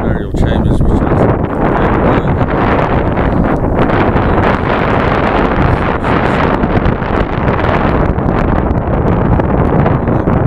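Wind buffeting the camera's microphone: a loud, steady rushing rumble.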